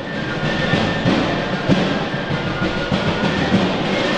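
A pipe and drum band playing, with rapid drumming loudest and a faint steady high tone held above it.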